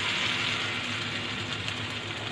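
Shrimp fritters sizzling as they fry in hot oil in a pan, a steady hiss that is loudest at the start and eases slightly.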